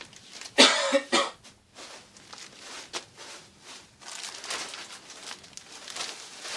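A person coughs twice in quick succession, about half a second in. Later comes soft rustling of plastic packaging being handled.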